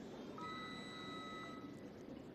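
A single steady electronic beep lasting just over a second, over the low murmur of a hushed arena.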